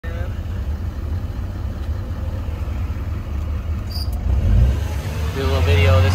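A 3500HD High Country pickup's engine idling, a steady low rumble heard from inside the cab. A short high beep sounds about four seconds in.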